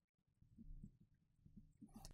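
Near silence: room tone, with a few faint low soft sounds.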